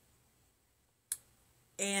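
A single short, sharp click about a second in, against near silence, followed near the end by a woman starting to speak.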